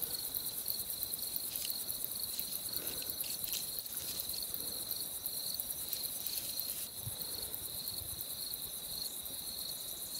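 Night-time insects calling in a steady, high-pitched chorus, a continuous finely pulsed trill.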